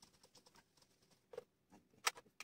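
Faint whiteboard eraser wiping across the board in quick, rapid strokes, then a light knock about two-thirds through and another near the end.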